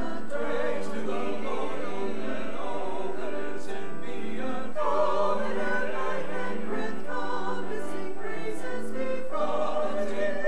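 Mixed church choir of men's and women's voices singing, holding sustained notes that move from chord to chord every second or so.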